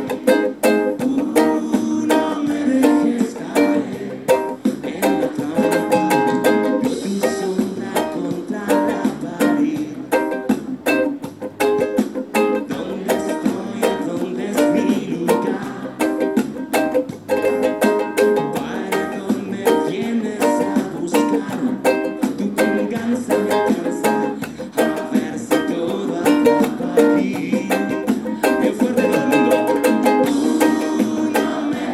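Ukulele strummed steadily in a rhythmic down-up pattern, chords changing as it goes.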